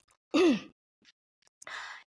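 A woman briefly clears her throat, a short voiced sound falling in pitch, then takes an audible breath in near the end.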